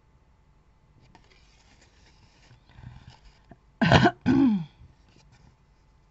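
A woman clearing her throat: two short loud bursts about four seconds in, the second voiced and falling in pitch. Before it, faint rustling of card paper being handled.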